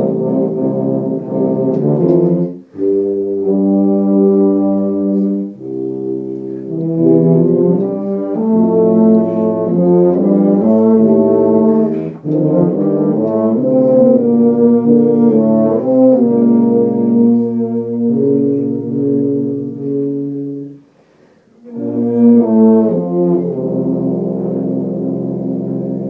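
Ensemble of tubas and euphoniums playing sustained low brass chords in phrases. The phrases break off briefly a few times, with a silence of about a second near the end before the chords come back in.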